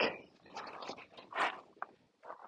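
A few footsteps on gravel: short, irregular scuffs, the loudest about halfway through.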